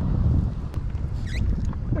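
Wind buffeting the microphone with water lapping at a kayak hull, a steady low rumble, with one click and a short high squeak a little past the middle.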